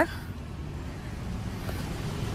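Steady low rumble of town-street ambience, with no distinct events.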